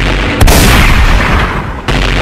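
Gunshot sound effects: a loud shot about half a second in with a long echoing tail, and another shot near the end.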